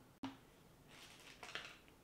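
Near silence: room tone. It is broken by a short click about a fifth of a second in and a few faint, soft rustles after the middle.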